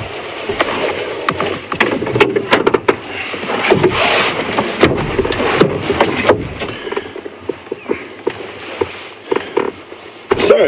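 Rustling and scraping with scattered clicks and taps as pieces of dry marula bark are handled and set down on a vehicle's dashboard.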